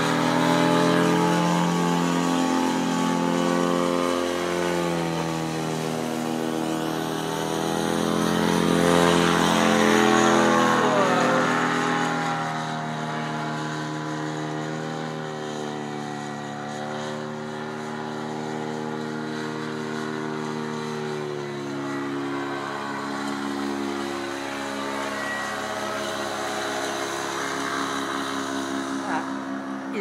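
Powered paraglider's engine and propeller droning overhead, a steady buzz whose pitch bends briefly as it passes. Louder for the first dozen seconds, then a little quieter and steadier.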